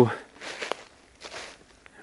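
Footsteps through dry fallen leaves on a forest floor: two soft rustling steps about a second apart.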